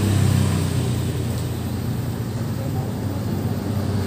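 A steady, low engine drone runs on without sudden changes.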